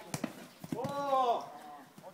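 A football being kicked in a tackle, heard as sharp knocks right at the start, then a loud, drawn-out shout that rises and falls in pitch, about a second in.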